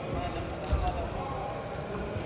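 Heavyweight freestyle wrestlers grappling on the mat: one heavy thud of feet and bodies on the wrestling mat about two-thirds of a second in, over faint voices in the hall.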